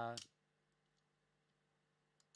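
The end of a man's drawn-out spoken "uh", cutting off about a quarter second in, then near silence: room tone.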